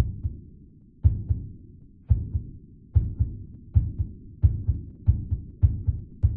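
Heartbeat sound effect: deep double thumps that start at about one beat a second and speed up to nearly two a second.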